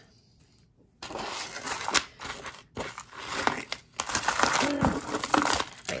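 Tangled costume jewelry being pulled apart by hand: beaded necklaces and metal chains rustling and clinking together in irregular bursts, starting about a second in.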